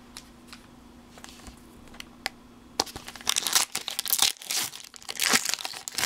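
A foil Pokémon booster pack wrapper crinkling and tearing as it is opened, loud and crackly from about three seconds in, after a few light taps.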